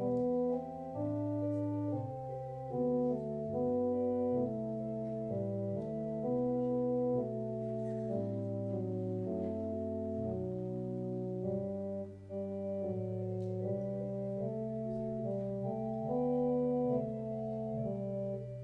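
Church organ playing the opening voluntary: slow, sustained chords that change about once a second over a moving bass line.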